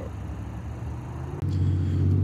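Low, steady rumble of an idling vehicle engine. It jumps abruptly louder about one and a half seconds in.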